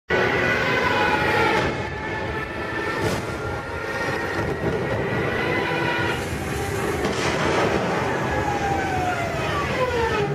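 Warplane propeller engines droning over a steady rumble, their several tones sliding down in pitch as the aircraft pass.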